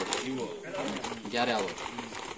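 A dove cooing: two short, low coos about a second apart.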